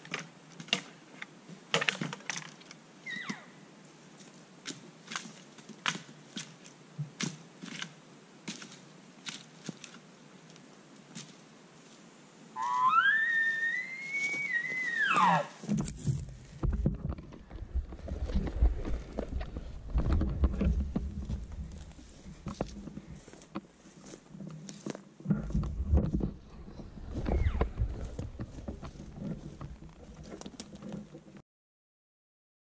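Scattered light clicks, then about twelve seconds in a single elk-style bugle: one whistled note that slides up, holds high for a couple of seconds and drops away. From about sixteen seconds on, low rumbling and bumping handling noise as the camera is picked up and carried.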